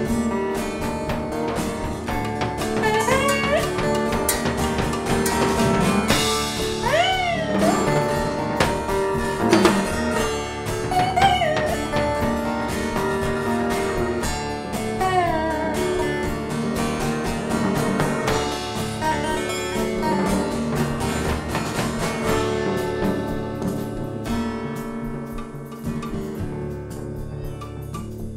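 Live blues instrumental: a slide guitar played flat across the lap, its notes gliding up and down, over a drum kit keeping a steady beat.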